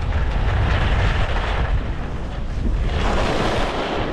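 Wind buffeting the microphone of a moving skier's camera, with the hiss of skis scraping across groomed snow that swells twice, about a second in and again near the end.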